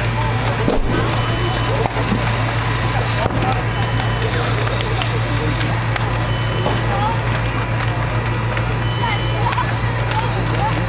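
Fire apparatus engine and pump running steadily with a constant low hum, while water is sprayed from an aerial ladder onto a burning farmhouse; voices talk in the background.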